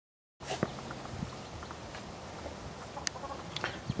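Silence, then from about half a second in a faint outdoor background with a low hum, a few faint animal calls and a sharp click about three seconds in.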